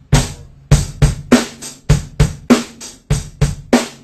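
Rock drum kit played with sticks: bass drum, snare and cymbals in a steady rock beat, demonstrating a 16th-note feel at the same tempo as the basic beat. The strikes come about three or four a second and stop just before the end.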